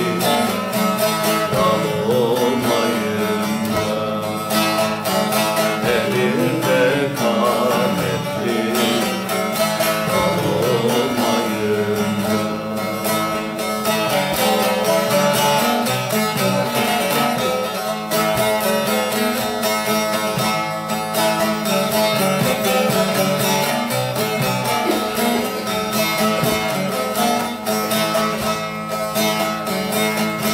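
Bağlama (Turkish long-necked saz) played continuously in a folk hymn (nefes) melody, with a man's voice singing along mainly in the first part. The player himself says the saz is out of tune.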